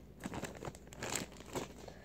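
Plastic packaging of soft-plastic fishing lures crinkling as it is handled, a run of irregular short crackles.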